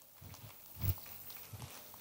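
A few faint, short low knocks in a quiet pause: about three of them, the clearest just before one second in.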